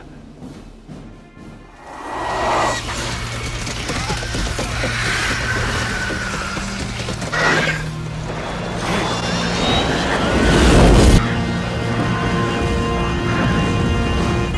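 Film soundtrack: dramatic score over battle sound effects, with a heavy explosion about ten seconds in.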